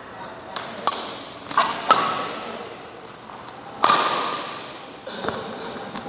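Badminton rally: sharp racket strikes on the shuttlecock and footwork on the court, a hit every second or so, the loudest near two and four seconds in, echoing in a large sports hall.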